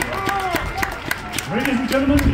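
Crowd in the stands clapping and cheering: scattered hand claps with voices calling out close by, and a man's voice louder near the end.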